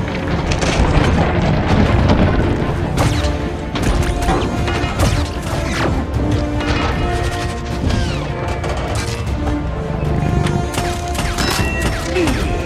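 Film battle sound mix: repeated explosions, crashes and gunfire with flying debris, laid over a loud, sustained film score.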